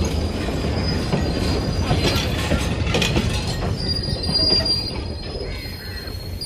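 Passenger train coaches rolling along the track: a steady low rumble with a few knocks, and a thin high squeal from the wheels that comes and goes, strongest a little after the middle.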